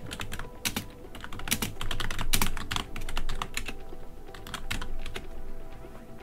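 Typing on a computer keyboard: quick, irregular keystrokes in short runs as a terminal command and password are entered, ending shortly before the end.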